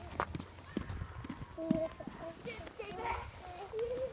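Footsteps crunching through snow in an uneven rhythm, mixed with short snatches of children's voices.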